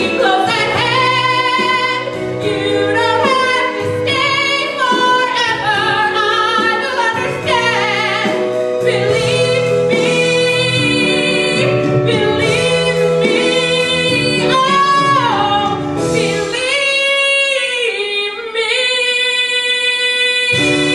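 Women singing a 1960s-style pop song with band accompaniment, ending in longer held notes over the last few seconds.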